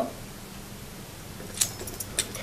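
Quiet room tone, then near the end a quick cluster of light clicks and clinks as small hard objects are handled on a table.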